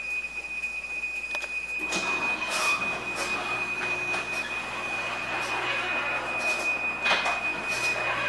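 Chamberlain HD520EV garage door opener starting about two seconds in and running steadily as it closes the door on a remote command, the motor humming and the trolley running along the rail. A thin, steady high whine sounds throughout.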